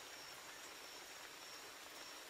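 Faint background nature ambience: a steady hiss with a thin, high insect trill that keeps breaking off and starting again.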